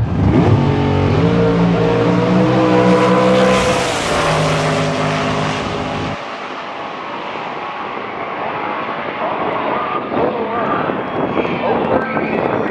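Dragster's engine launching off the line and accelerating hard, its pitch climbing and stepping back at the gear changes. After about six seconds it falls away abruptly to a lower, distant engine and wind noise.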